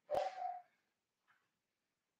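A single sharp click, then a brief rustle of paper sheets being handled, all within the first half-second.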